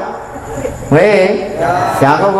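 A Buddhist monk's voice intoning a long, drawn-out phrase in a sing-song, chant-like way, starting about a second in after a quieter stretch.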